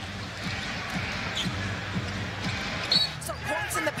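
A basketball dribbled on a hardwood court, a steady thump about twice a second, over arena crowd noise.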